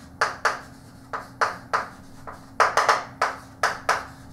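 Chalk writing on a blackboard: a quick run of short, sharp taps and scratches, roughly three a second, as each letter is stroked out.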